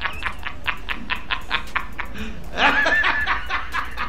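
A man laughing: a quick run of short breathy laugh pulses, about eight a second, then a higher-pitched burst of laughter near the three-second mark.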